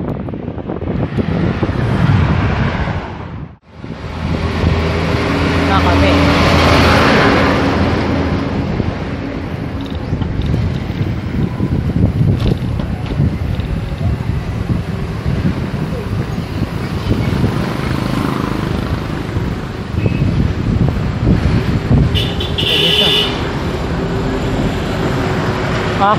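Road traffic, with cars and motor vehicles running past, and wind rushing over a microphone carried on a moving bicycle. There is a short high tone about three-quarters of the way through and a brief break about three seconds in.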